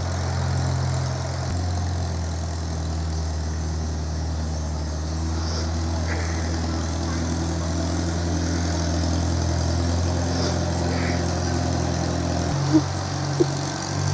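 Farm tractor engine running steadily at a low idle, its note shifting about a second and a half in and again near the end, with a couple of light clicks shortly before the end.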